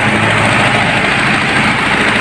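Willys Jeep engine idling steadily, running again now that its clogged fuel pump has been cleaned.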